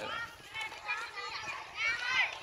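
Children's voices calling and chattering, high-pitched and in short bursts.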